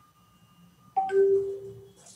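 A short electronic chime about a second in: a sudden start, then a single steady note that fades out.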